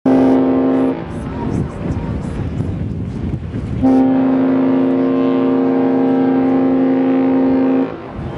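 Queen Mary 2's ship's whistle sounding two blasts: a short one that stops about a second in, then a long, steady one from about four seconds until near the end.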